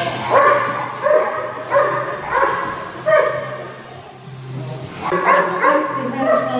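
A dog barking in a regular run, about one bark every two-thirds of a second, while running an agility course. It pauses briefly around four seconds in, then barks again near the end.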